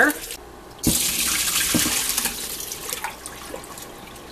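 Tap water running and splashing in a stainless steel sink as diced vegetables are rinsed in a pot of water. A single knock comes just under a second in, then the water sound goes on for about two seconds and fades.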